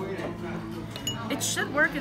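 Voices talking, with a light clink about a second in.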